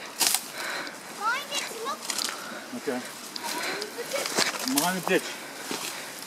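Footsteps on a dirt trail and the rustle of people pushing through ferns and tall grass, with scattered short snaps and clicks. Voices talk briefly in between, and one word is called out near the end.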